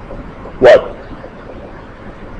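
A man's voice saying a single short, loud 'what?' a little over half a second in, over faint steady hiss.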